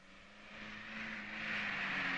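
A car driving up, its engine and tyre noise swelling steadily louder as it approaches.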